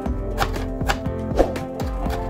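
A chef's knife chopping fresh herbs on a cutting board: quick knocks of the blade on the board, about two a second, the sharpest about one and a half seconds in.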